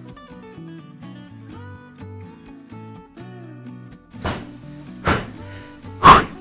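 Light melodic background music, with two loud slaps about four seconds in, under a second apart: a ball of strudel dough thrown down hard on the stone countertop. This is the beating that is meant to make the dough elastic.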